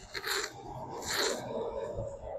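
Two short rustling scrapes about a second apart, the second the louder: movement rubbing against a clip-on microphone.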